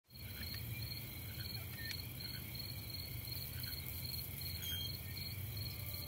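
Insects, crickets by the sound of it, chirping in a steady high pulse about twice a second, over a low steady hum of outdoor ambience.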